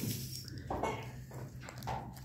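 Quiet meeting-room tone with a steady low hum and a few faint small clicks and knocks.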